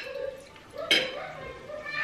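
Low talk at a dinner table with a single sharp clink of tableware about a second in.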